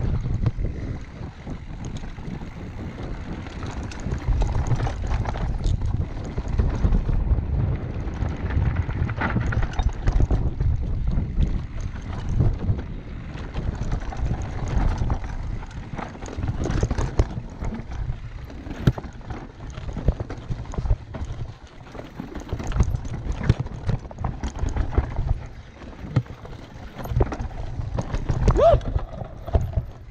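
Wind buffeting a handlebar-mounted camera's microphone over the rumble of knobby tyres on a dirt and rock trail, with frequent knocks and rattles from a Specialized Kenevo e-mountain bike's frame, chain and suspension as it rides over rocks.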